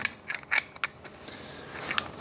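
A few light, irregular metallic clicks and faint rubbing from a small Monza-style fuel filler cap being handled and turned in the hands.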